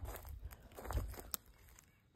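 Faint crunching and rustling of footsteps on wood-chip mulch and of a hand among plant stems, with a few low thumps. It dies down to near silence near the end.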